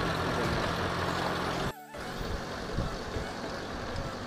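Safari jeep's engine running steadily, heard from inside the open cabin. About two seconds in, the sound drops out for a moment and gives way to a rougher rumble of the vehicle moving along the forest track.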